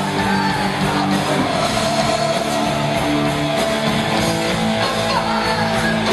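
Heavy metal band playing live, led by distorted electric guitars, with a long held high note running over the band from about a second and a half in.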